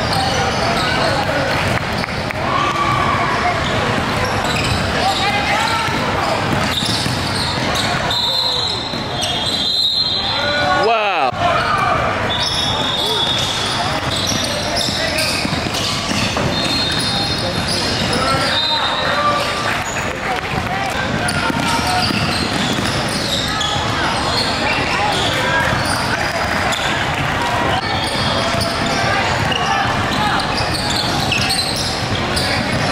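Basketball game sound in a large gym: a ball dribbling on a hardwood court under the indistinct voices of players and spectators, with brief high squeaks now and then.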